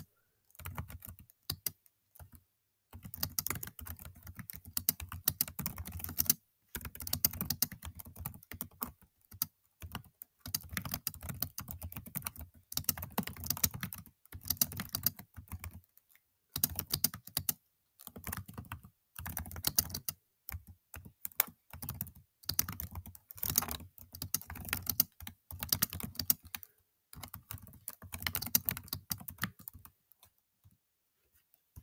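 Typing on a computer keyboard: runs of quick keystrokes broken by several short pauses.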